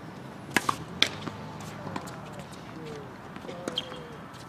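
Three sharp pops of a tennis ball on racket strings and a hard court, close together about a second in, followed by a few fainter clicks.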